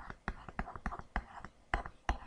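Stylus tapping and scratching on a tablet PC screen while drawing a brace by hand: a string of sharp ticks, about three or four a second, under soft breathy mumbling.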